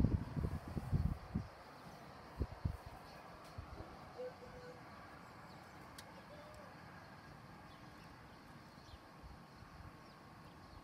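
Wind buffeting the microphone in irregular low gusts for the first second and a half and once more briefly, then faint steady outdoor background with a short bird call about four seconds in.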